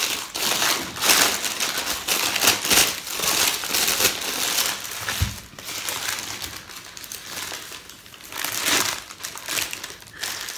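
Paper sandwich wrapper crinkling and rustling in irregular bursts as it is unfolded by hand from around a bread roll.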